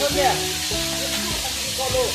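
Steady hiss of water falling down a rock face in a thin cascade, with music of held notes changing pitch over it.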